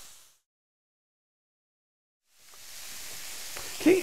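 Chicken sausage patties sizzling on an electric griddle, a steady frying hiss that fades out to dead silence for about two seconds and then fades back in.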